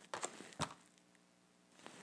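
Mostly near silence: a few faint, short clicks in the first second, then only room tone.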